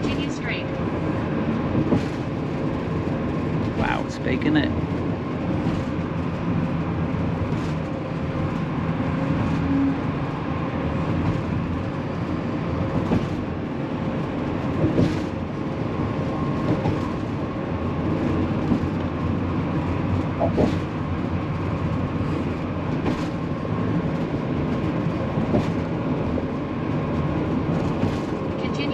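Steady road and engine noise inside a motorhome cab at highway speed, with a faint steady hum and occasional light knocks.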